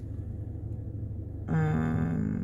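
Steady low rumble inside a car cabin. About one and a half seconds in, a woman's voice comes in with a drawn-out hum at one steady pitch.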